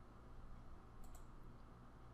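Computer mouse button clicked twice in quick succession about a second in, then once more faintly, over a faint low steady hum.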